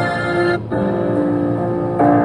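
Instrumental break in a slow ballad's backing track: held keyboard chords, with a short gap about half a second in before the next chord.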